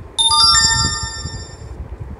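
Short electronic chime: a few bright notes sounding in quick succession, like a ringtone or notification tone, ringing on for about a second and a half before dying away.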